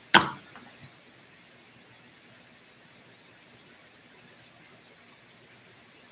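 A single spoken word at the start, then quiet room tone with a couple of faint clicks within the first second.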